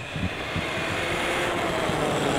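HoBao Hyper MT Sport Plus electric RC monster truck, running its brushless motor on 6S, driving back over asphalt: a steady motor whine over tyre noise that grows slightly louder as it nears.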